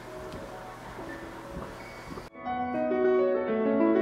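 Piano music begins abruptly a little over two seconds in, with clear sustained notes. Before it there is only faint background noise.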